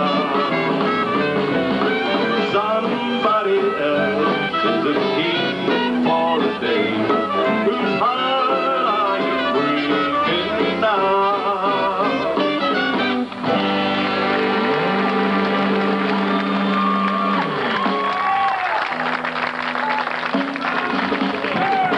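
A western swing band plays live, with fiddles, saxophones, guitars and drums in a busy ensemble passage. About 13 seconds in, the playing changes suddenly to long held notes, and quicker figures come back near the end.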